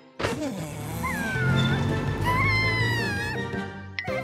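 Cartoon background music that comes in with a sudden hit just after the start. About a second in, a high, wavering, sliding squeal runs over it for a couple of seconds.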